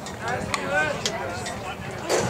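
Indistinct conversation from people nearby, with voices overlapping, and two short sharp clicks about half a second and one second in.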